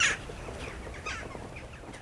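Birds calling: one loud falling call at the very start, then several shorter, fainter falling calls.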